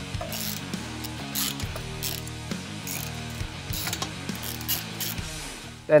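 Hand socket ratchet clicking in short, irregular bursts as it undoes the exhaust header nuts on a motorcycle engine, over background music.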